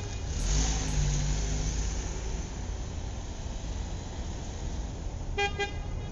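A steady low rumble and hiss, with two short honks of a horn near the end.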